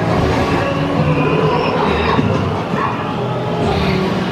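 A dark-ride soundscape of animal-like creature calls and chirps over a steady, dense wash of background sound.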